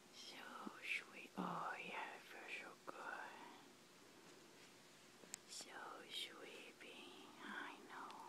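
Soft whispering in two stretches, the first over the opening three seconds and the second from about five seconds in.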